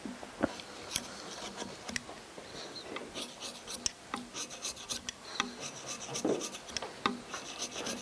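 Hand carving gouge cutting into a wooden figure in short, quick strokes: scratchy scraping with small sharp ticks, several a second, as fur texture is carved into the wood.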